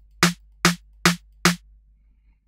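Sampled drum-machine snare from a software drum sampler, an 808-style soft snare layered with a short clap, played four times at an even pace of a little over two hits a second. Each hit is short and tight, its volume envelope shortened.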